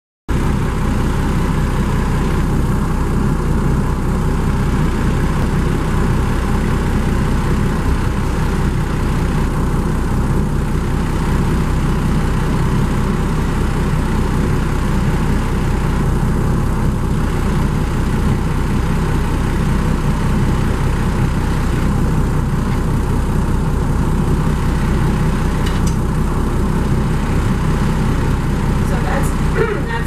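A motorboat's engine running steadily, heard from on board, with a constant low hum.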